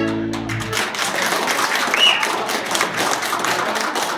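Closing chord of several accordions held and cut off under a second in, then audience applause. A short high whistle rises out of the clapping about two seconds in.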